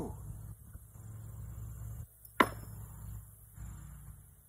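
A single sharp clack of a metal washer about two and a half seconds in, over a low steady background hum.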